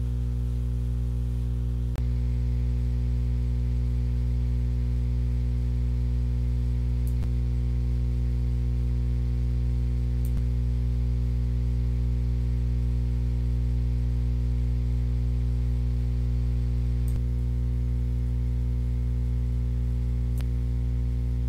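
Steady electrical mains hum: a low buzz with a stack of unchanging tones. It holds at one level throughout, with a few faint clicks.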